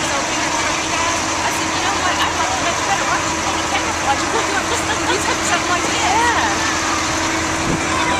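Large multi-axle military cargo truck's diesel engine running steadily as it rolls slowly past, with crowd chatter and voices throughout.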